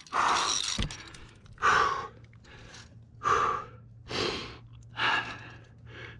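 A climber's heavy breathing from exertion: five loud, noisy breaths about a second apart.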